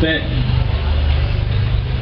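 A steady low rumble continues through a pause in a man's amplified speech. His last word is heard right at the start.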